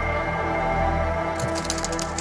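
Ambient background music with long held tones. About one and a half seconds in, short hissing bursts of an aerosol spray-paint can start over it.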